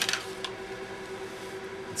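Brief rustle of a plastic shrink sleeve being opened by hand near the start, then only a faint steady hum.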